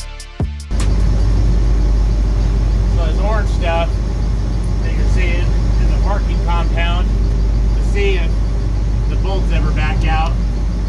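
Steady low rumble of an engine running nearby, with indistinct voices in the background.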